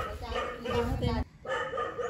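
Indistinct talking with short animal cries mixed in.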